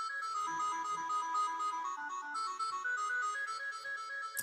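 Sibelius notation-software playback of two B-flat clarinets in sampled sound: a steady run of quick, evenly spaced notes, tremolo figures in thirds traded back and forth between the two clarinet parts.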